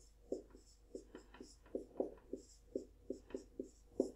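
Felt-tip marker writing on a whiteboard: an irregular run of short, faint strokes and taps, about three a second, as numbers, brackets and an equals sign are written.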